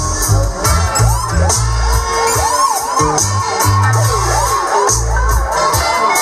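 Dub reggae played loud on a sound system: a heavy bass line, with a siren-like effect sweeping up and down over and over from about a second in. A crowd cheers over it.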